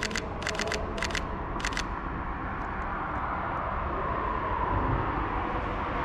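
Sony A7IV mirrorless camera shutter firing about four times in under two seconds, each shot a quick double click. Echoing traffic noise swells steadily behind it as a vehicle approaches.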